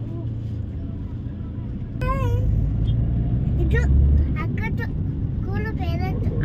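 Car engine and road noise heard from inside the cabin, growing louder about two seconds in as the car moves off from stopped traffic and gathers speed. Short snatches of a voice come over it.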